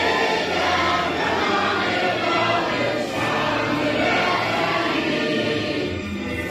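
A mixed choir of teenage boys and girls singing a song together, with a short break between phrases about three seconds in.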